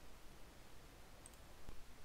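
Faint computer mouse clicks over quiet room tone, near the end.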